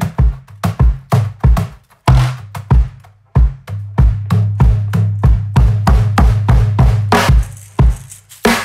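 Toca KickBoxx suitcase drum set played as a groove: the 14-inch suitcase bass drum and small 10-inch drums struck in a steady run of about three strokes a second, with a couple of short breaks, and a low sustained bass note under the hits through the second half.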